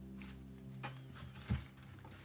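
Soft background music with long held low notes, plus a couple of faint taps from tarot cards being handled, about a second and a second and a half in.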